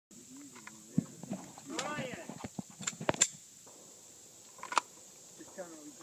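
People talking in the background, with a few sharp clicks or knocks: one about a second in, three in quick succession about three seconds in, and another near the end. A steady high-pitched whine runs underneath.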